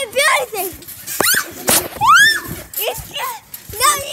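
Children squealing and shouting in rough play, with a few sharp thumps in between.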